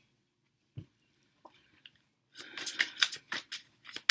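Near silence with one soft knock, then from about two seconds in a quick, irregular run of sharp clicks and rustles.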